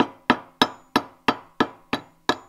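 Rubber mallet giving light taps to a 14 mm socket, driving a bushing out of an old snowmobile A-arm. There are about seven evenly spaced taps, roughly three a second, each dying away quickly.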